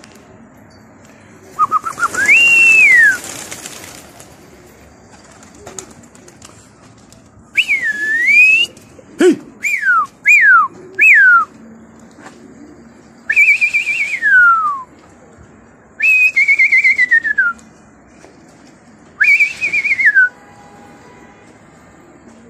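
A man whistling loudly to his flying pigeon flock: eight whistles, most sliding up and then falling away, with three short quick falling whistles in a row in the middle.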